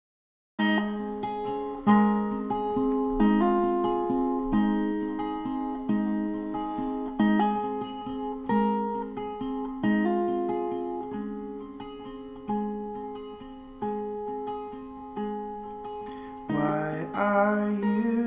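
Acoustic guitar playing a slow intro: a chord struck about every second and a half, with single notes picked in between. A singing voice comes in near the end.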